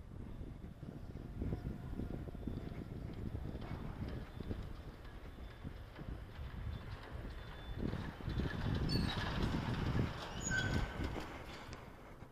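Movement noise from a handheld phone carried along a city sidewalk: irregular low thumps and rumble from footsteps and handling. It grows louder about eight seconds in, with a few short high squeaks, then eases near the end.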